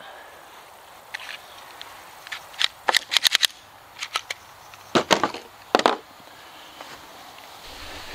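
A scattered series of sharp clicks and knocks, well below the level of a shot. There is a quick run of four or five about three seconds in, and single knocks around four, five and six seconds in.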